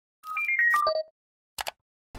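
Short electronic logo jingle: a quick falling run of beeping notes lasting under a second, followed about a second and a half in by two brief clicks.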